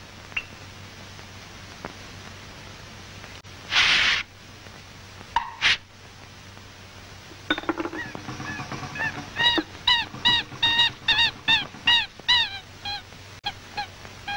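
Early sound-cartoon soundtrack: a background hiss with a few clicks, a loud burst of noise about 4 s in and a shorter one about a second later. From about 7.5 s comes a run of short, high, nasal notes, several a second, each bending up then down in pitch, forming a bouncy tune.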